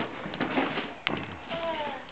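Wrapping paper rustling and tearing as presents are unwrapped, with a sharp crackle about a second in and a child's voice briefly.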